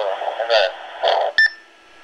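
A voice received over an amateur radio transceiver's speaker, thin and band-limited. About 1.4 s in it stops with a click and a short beep as the incoming transmission ends, leaving faint hiss.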